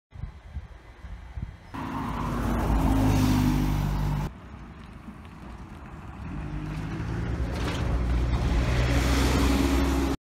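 Clips of road vehicles cut together. A diesel bus engine runs with a steady low drone from about two seconds in and is cut off abruptly after about four seconds. A second engine then builds up and grows louder toward the end.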